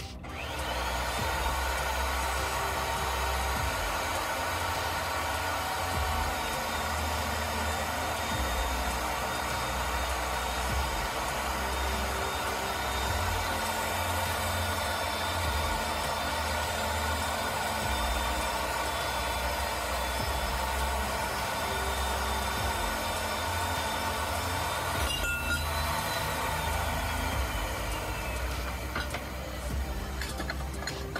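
Electric pipe threading machine running steadily. Its motor whine rises as it spins up at the start and falls away as it winds down near the end.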